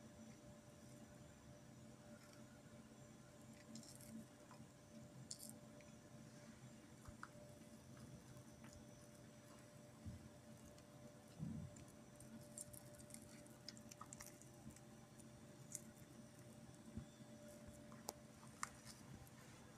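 Near silence, with faint scattered crackles and soft ticks of corn bread being broken apart by hand over a plate. There is one soft knock about midway.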